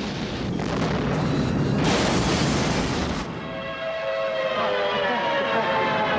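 Tornado wind and debris noise: a loud, rushing noise without pitch that swells and then cuts off abruptly about three seconds in. Sustained musical tones follow.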